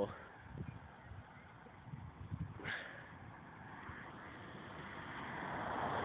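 A faint road vehicle approaching, its noise growing slowly louder through the second half.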